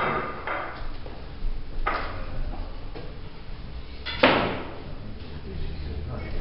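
A single sharp knock about four seconds in, with a brief ring after it, over low room noise and a few softer knocks.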